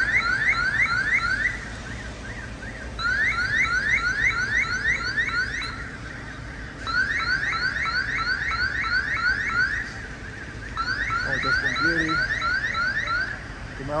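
Electronic security alarm sounding in repeated bursts of rapid rising chirps, about three a second, each burst lasting two to three seconds before a short pause. These are the building alarms at a pharmacy and a bank that went off during a fire.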